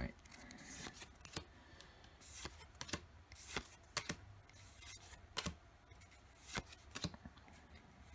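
A stack of Pokémon trading cards being flipped through by hand, one card at a time slid from the front to the back of the stack, making an irregular series of faint snaps and swishes.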